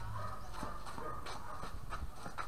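Faint knocks of a doubles tennis rally, the ball struck by rackets and bouncing on the hard court, three sharp knocks in two seconds over a steady outdoor background.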